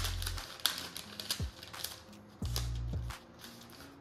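Glassine paper being folded and creased around a bundle of cigars: a run of crisp, irregular crackles and rustles from the handled paper.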